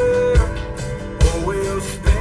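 Hick-hop song with guitar and a kick drum about every 0.8 s; a held note ends about half a second in.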